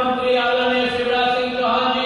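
One voice chanting a single long, steady note, loud and held through the whole moment, with a slight waver in pitch near the end.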